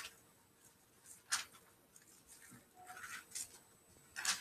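Faint rustling of thin Bible pages being turned by hand, with one sharper page swish about a second in and a few softer rustles near the end.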